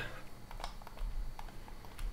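A few faint, sharp clicks of a computer keyboard and mouse over a low steady room hum.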